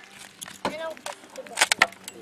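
A brief spoken sound, then a quick cluster of sharp clicks and knocks near the end as a hand floor pump and its hose are handled and fitted to the air tank of a pneumatic tennis-ball cannon.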